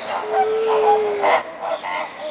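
A flock of flamingos calling: many short overlapping calls, several a second, with one longer steady note near the start lasting about a second.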